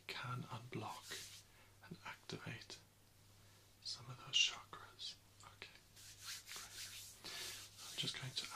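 A man whispering close to the microphone in short, broken phrases.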